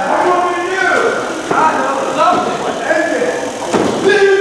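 Indistinct voices talking through most of the stretch, with a single sharp thud on the wrestling ring mat near the end.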